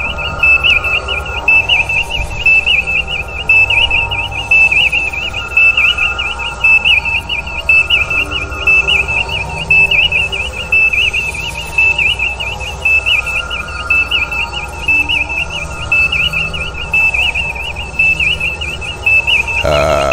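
Sci-fi electronic sound effect: a high, fluttering warble held on one pitch over a low hum, pulsing regularly in loudness.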